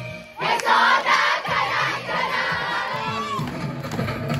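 A group of young women shouting together, loud and sudden about half a second in and lasting about three seconds, after which music comes back in.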